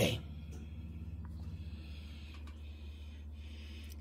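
Low steady hum with faint soft rustles and light ticks of a sheet of pie dough being laid over and smoothed onto a pie plate.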